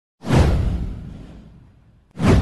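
Intro sound effect: a whoosh with a deep boom that starts suddenly, sweeps down in pitch and fades away over about a second and a half.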